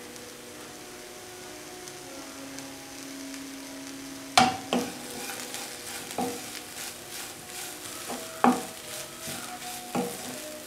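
Shredded jackfruit stir fry sizzling softly in a nonstick wok. About four seconds in, a wooden spatula starts stirring and tossing it, with several sharp scrapes and knocks against the pan.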